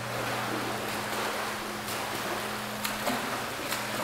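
Water splashing from a swimmer's freestyle arm strokes in an indoor pool, with a steady low hum underneath.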